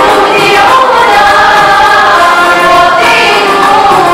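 Girls' school choir singing together, several voices holding sustained notes.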